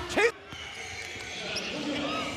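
A basketball being dribbled up a hardwood court in an indoor arena, over the low steady sound of the hall, with faint short squeaks near the end. A brief word of commentary cuts off at the very start.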